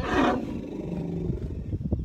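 An African elephant calls once, loud and harsh at the start, then drops in pitch into a low, held roar that fades after about a second and a half.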